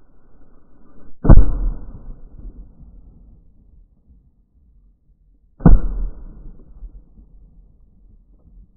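Shotgun fired twice, about four and a half seconds apart, each shot sharp and loud with a short trailing echo.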